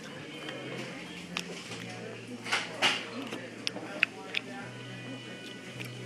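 Restaurant background music and faint chatter, with a few short, light clinks of a metal spoon against a ceramic soup bowl.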